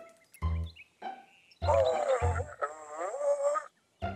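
Cartoon soundtrack: a few short low drum-like thumps, and a loud wavering, warbling tone lasting about two seconds in the middle.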